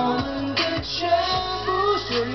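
Mandopop ballad performed live: a male singer's voice over a pop accompaniment with a steady bass line, between sung lines of the lyrics.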